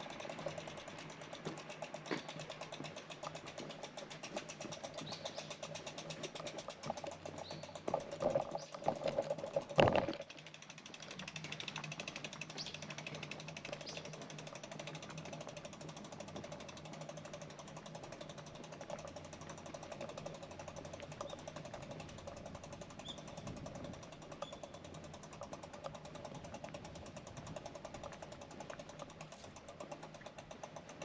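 E-bike drivetrain running while the bike is ridden: a steady mechanical whir with fast, fine ticking. A loud knock comes about ten seconds in.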